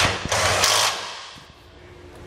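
Handheld cordless power tool spinning a bolt in to hold the charcoal canister up under the truck. It starts sharply, runs for about a second, then fades away.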